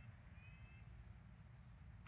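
Near silence: a faint outdoor background, with one faint, short, high whistled note about half a second in.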